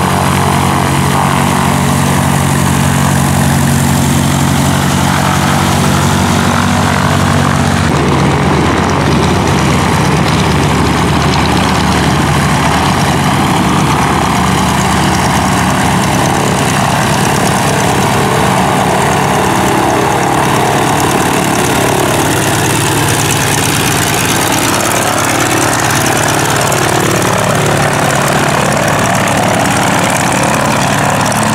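Radial engine and propeller of a Stearman biplane running steadily at taxi power as the plane taxis close past.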